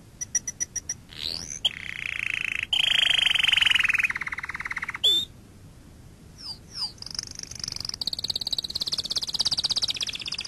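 Animal calls: a series of rapid, buzzing trills that start and stop abruptly, with a few short sliding chirps. There is a brief lull about halfway through, then a steady higher-pitched trill carries on to the end.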